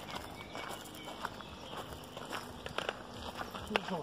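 Footsteps crunching on a sandy gravel path, irregular steps every third to half second over outdoor background hiss. A voice starts right at the end.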